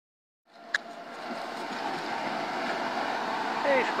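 A Budapest line 2 tram rolling in on its street track and passing close by: a steady rolling rumble of wheels on rail that grows louder as it nears, with a faint steady hum. A brief sharp click sounds just under a second in.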